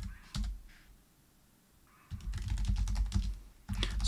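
Typing on a computer keyboard: a couple of keystrokes, a pause of about a second, then a quick run of keystrokes.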